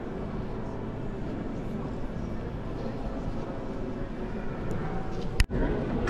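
Murmur of many visitors' voices inside a large stone cathedral, with one sharp click near the end.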